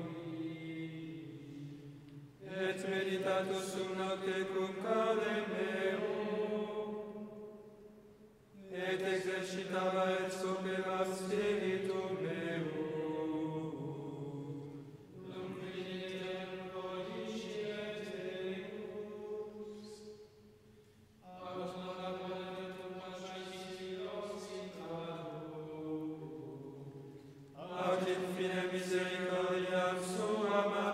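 Men's choir chanting Latin Gregorian chant for the Office of Matins. The singing comes in phrases of about six seconds, each followed by a short pause for breath.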